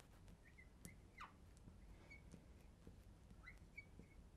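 Near silence with several faint, short squeaks of a marker writing on a glass lightboard.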